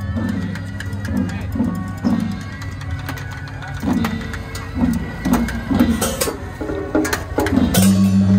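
Beiguan-style temple procession band playing a percussion passage: a large hanging gong and brass cymbals struck in a rhythmic pattern, the gong notes falling in pitch. A steady sustained tone drops out at the start and comes back in just before the end.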